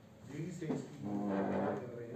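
Indistinct speech in a reverberant meeting room, with one drawn-out, steady vowel held for about half a second.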